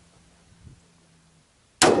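A single AR-15 rifle shot about two seconds in, sudden and very loud after near quiet. It is fired prone with the magazine pressed on the ground to test that the rifle still cycles on its reduced gas setting, which the shooter judges to be a touch too little gas.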